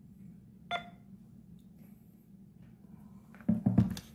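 Handling of a scratched lottery ticket on a table: one short ringing click about a second in, then a quick run of dull knocks near the end as the card is picked up, over a low steady hum.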